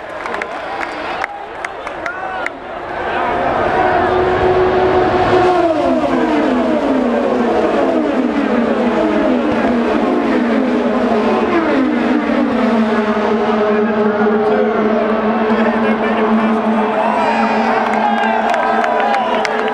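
A pack of IndyCar race cars goes past at full throttle on the restart, getting loud about three seconds in. Engine note after engine note drops in pitch as each car passes, then the sound settles into a steady drone as the field runs on down the straight.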